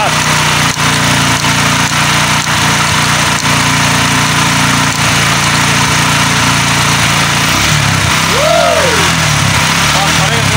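STX 125 motorcycle engine running steadily while its charging voltage is read after a full-wave conversion of the stator wiring. The engine note changes about seven and a half seconds in.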